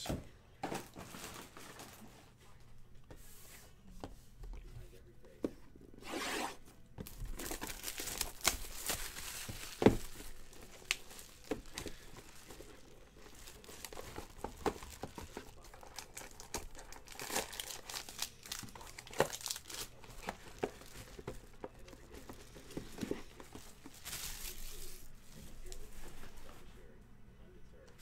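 Plastic shrink wrap being torn and crinkled off a sealed trading-card hobby box, in spells of crackling, with a sharp knock of the box being handled about ten seconds in.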